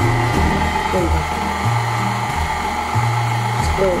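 KitchenAid Artisan stand mixer running, its beater turning thick dough in a stainless steel bowl: a steady electric motor whine. Background music plays underneath.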